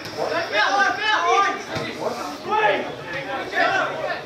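Indistinct speech of several people, talk that the recogniser could not make out as words, most likely from spectators close to the microphone.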